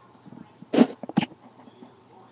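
Two short, sharp sounds from a domestic cat, about half a second apart, near the middle.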